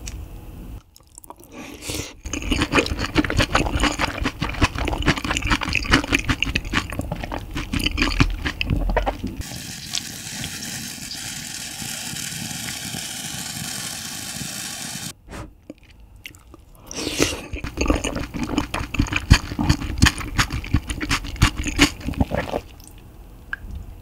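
Close-miked wet chewing of braised kimchi, pork belly and rice: dense sticky, squishy mouth clicks with occasional crunches. About halfway through, a steady hiss-like noise takes over for about five seconds, and then the chewing resumes.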